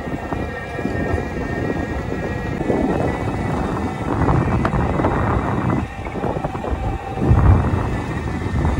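Wind buffeting a phone's microphone outdoors: an uneven rumbling noise that swells and drops, with a faint steady high tone underneath.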